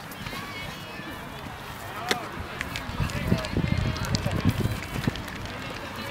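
Faint, distant voices of ultimate frisbee players calling out across an open field, with a few short sharp clicks.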